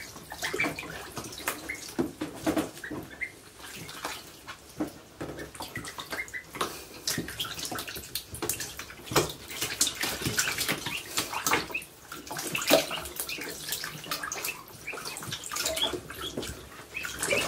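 Ducklings splashing and paddling in shallow water in a plastic tub: irregular small splashes and sloshing throughout, with occasional short high peeps.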